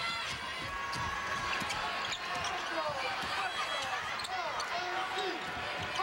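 Basketball bouncing on a hardwood court during live play, with sneakers squeaking in short high squeals throughout, over the steady noise of an arena crowd.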